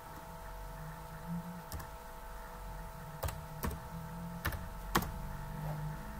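About five separate clicks of a computer keyboard, spread across several seconds, over a faint steady electrical hum.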